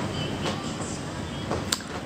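A pet's claws scratching at a sofa, a low scratchy rustle with a couple of faint clicks.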